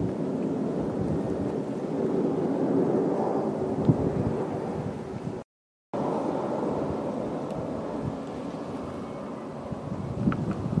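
Steady rumble of aircraft engines overhead, swelling around three to four seconds in. It cuts out abruptly for a moment just past the middle.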